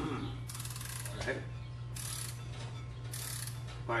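Ratchet wrench clicking in three short runs of rapid ticks as it turns the threaded rod of a Powerbuilt strut spring compressor holding a coil-spring strut.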